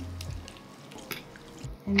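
A thin stream of mirin poured from a bottle into stock in a wok, trickling faintly into the liquid.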